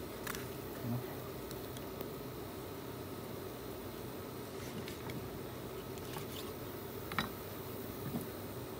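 Steady faint background hiss with a few faint clicks and taps as a kitchen knife cuts through a plucked quail carcass on a wooden chopping block.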